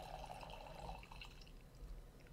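Red wine poured from a bottle into a wine glass: a faint liquid trickle that fades out after about a second.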